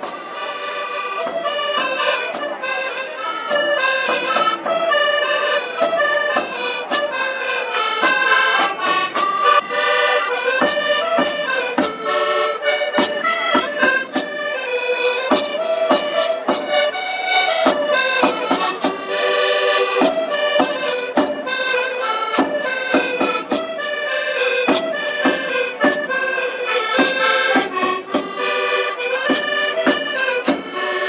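Accordion-led Portuguese folk dance music with a lively melody over a steady beat, accompanying a folk dance.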